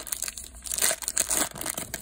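Foil wrapper of a Panini Prizm football card pack crinkling as it is torn open and peeled back by hand, an irregular dry crackle.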